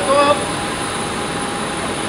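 Steady noise of a parked jet airliner running on the apron, with a brief pitched voice at the very start.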